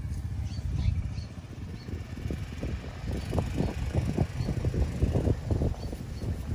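Wind buffeting the microphone: a steady low rumble, with rapid, irregular gusting bursts from about two seconds in.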